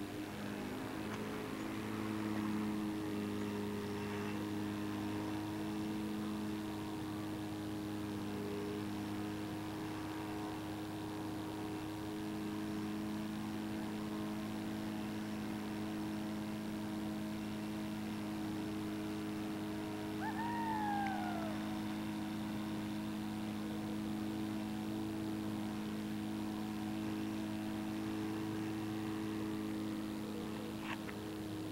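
Steady electrical hum made of several even low tones, unchanging throughout. About twenty seconds in, one short call slides downward in pitch.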